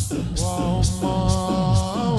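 Shia latmiyya lament: a male chanter holds one long sung note over a steady pounding beat of about two strokes a second.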